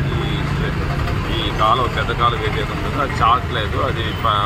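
A man speaking Telugu over a steady low rumble of street traffic.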